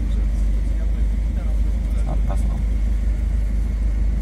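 Steady low rumble of a Daewoo car's engine and road noise heard inside the cabin, at an even level throughout.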